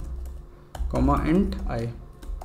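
Computer keyboard being typed on: a quick run of separate key clicks as code is entered.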